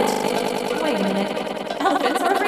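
Cartoon voice and background music run through a heavy audio effect, giving it a fast, buzzing, stuttering texture.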